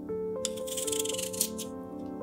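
Vegetable peeler scraping the skin off a raw potato in several quick, scratchy strokes during the first second and a half, over soft piano background music.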